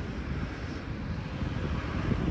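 Outdoor background rumble: a low, uneven rumble with a faint hiss above it.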